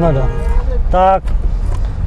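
Men's voices talking briefly, over a steady low hum.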